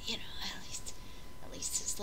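A woman's soft, half-whispered speech.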